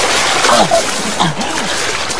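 Water splashing, with short vocal cries rising and falling over it.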